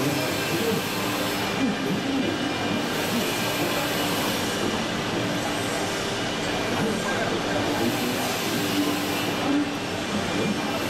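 Steady exhibition-hall din: a dense mechanical rumble and hiss of running machinery mixed with crowd noise, with faint steady tones in it.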